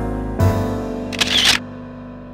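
Piano background music, with a short camera-shutter click sound about a second and a half in.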